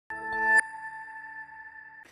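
Short TV news ident sting: a synthesized tone swells for about half a second, then breaks into a bright ringing tone that slowly fades out.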